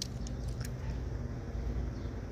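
A few faint clicks as a small die-cast toy car is turned over in the fingers, over a low steady background hum.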